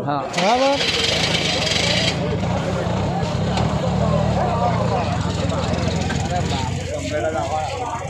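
Auto-rickshaw engine running steadily with a low hum, under talking voices, with a hiss over it for the first two seconds.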